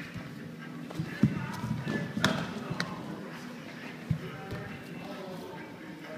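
Kung fu sparring in a gym hall: a few sharp thuds of contact and footwork, about a second, two seconds and four seconds in, over a steady murmur of crowd chatter.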